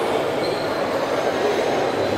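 Steady, dense background din of a busy exhibition hall, with no single clear source and no speech standing out. A faint thin tone sounds briefly about half a second in.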